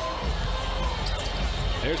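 Basketball dribbled on a hardwood court over steady arena crowd noise.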